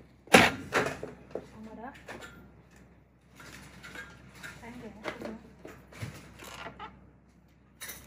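Low, indistinct talking in a small room. A sharp knock about a third of a second in is the loudest sound.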